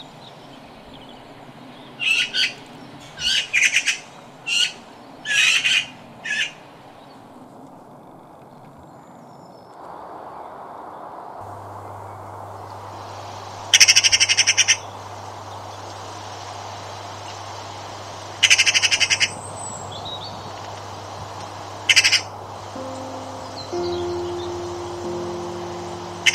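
Eurasian magpie calling: a run of about seven short, harsh calls, then three rapid rattling chatters a few seconds apart, the first about a second long. A low hum comes in midway, and soft music with held notes starts near the end.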